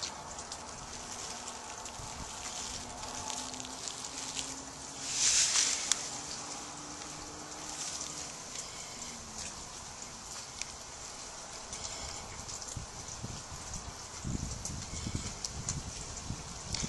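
Dry fibrous tinder bundle rustling and crackling as gloved hands fold it around a friction-fire ember. One louder airy rush comes about five seconds in, and dull handling bumps come near the end.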